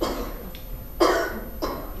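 A woman coughing three short times into a handheld microphone.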